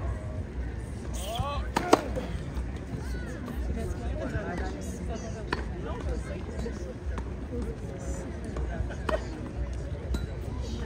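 Tennis balls struck with rackets: three sharp pops a few seconds apart, the loudest about two seconds in, with people talking in the background.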